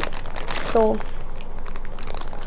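Plastic ramen noodle packet crinkling as it is handled, a continuous run of small crackles.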